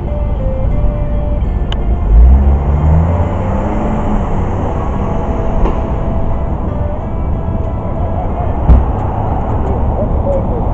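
Single-cut electric guitar played through an amplifier, an instrumental passage without singing, recorded on an overloaded camera microphone. A loud low rumble swells about two seconds in, and a low thump comes near the end.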